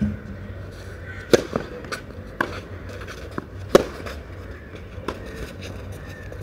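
Tennis ball struck by rackets in a rally on a clay court: a loud serve about a second in, then hits alternating about every 1.2 to 1.4 seconds, every other one louder, with softer ball bounces between them.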